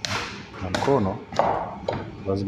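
A hand kneading and punching soft chapati dough in a metal pot: four sharp slaps and knocks in about two seconds.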